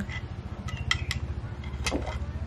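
A few light clinks and clicks from a glass jar as someone sips a protein supplement drink from it, over a low steady hum.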